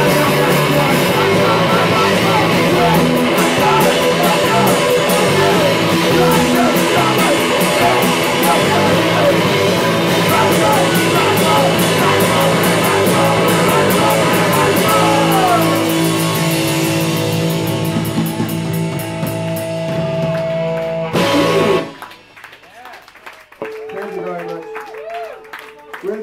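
Live rock band playing loud: electric guitars, bass, drum kit and a man singing. The song closes on held chords and stops abruptly about 22 seconds in, leaving a faint lingering tone.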